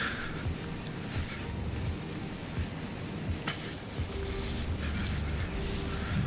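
Wind buffeting the microphone with a steady low rumble, over the even hiss of surf breaking on the beach.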